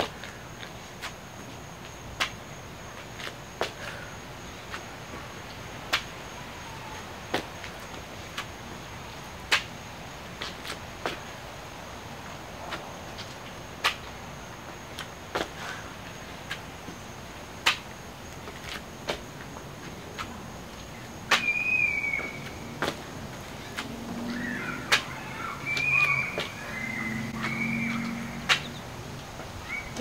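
Sneakers landing on a thin exercise mat over concrete during repeated lateral jumping burpees: short sharp thumps, about one every second and a half. From about two-thirds of the way in, voices can be heard in the background.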